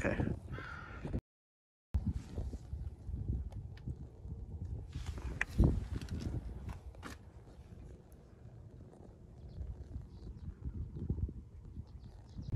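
Hand work on a car engine: low rumbling handling noise with scattered light clicks and one sharper knock about five and a half seconds in. The sound drops out to silence briefly about a second in.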